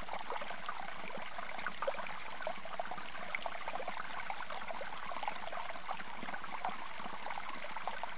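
Swimming pool water trickling and lapping steadily, full of small splashes. A faint high triple chirp repeats about every two and a half seconds.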